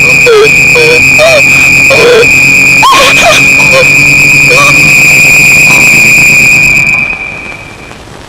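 Film sound effect: a loud, steady, high-pitched whistle-like ringing tone, overlaid with short wavering voice-like swoops that rise and fall in pitch. It cuts off about seven seconds in.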